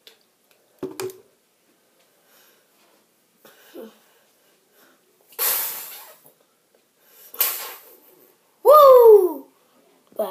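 A boy's exaggerated breathing after drinking water: two loud, breathy gasps around the middle, then a loud drawn-out 'ahh' that falls in pitch near the end.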